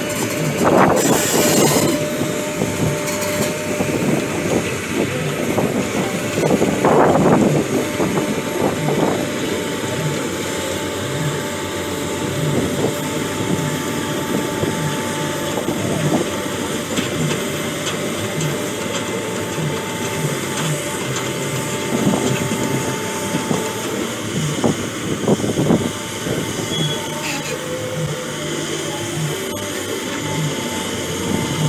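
Caterpillar 320D amphibious excavator's diesel engine running while its steel pontoon tracks clank and squeal as it crawls out of the water up a bank, with an irregular clatter of track links throughout.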